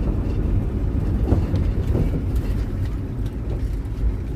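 Steady low rumble of a minibus taxi heard from inside the cabin: engine and road noise, with a few small rattles and one brief louder knock about a second in.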